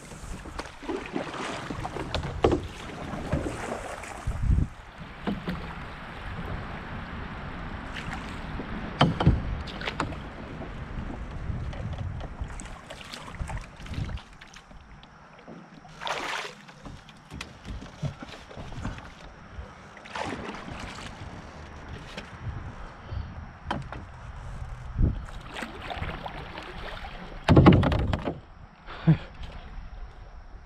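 Water sloshing and splashing around an aluminium-framed canoe on a fast, flood-high river, with irregular knocks and splashes throughout; a bare foot trails in the water, and a louder splash-and-knock comes near the end.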